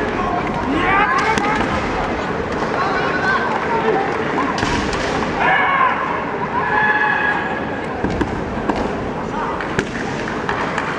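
Kendo fencers' kiai: drawn-out shouts, with the longest cry held about a second and a half past the middle, over the steady hum of a gymnasium crowd, and a few sharp clacks of bamboo shinai late on.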